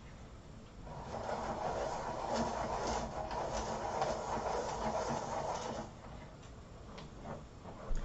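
A pencil sharpener grinding a pastel pencil, a steady grinding that starts about a second in and stops about five seconds later.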